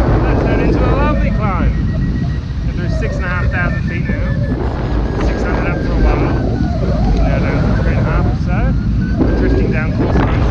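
Steady wind rushing and buffeting over the microphone of a hang glider in flight, with indistinct voice-like sounds breaking through at intervals.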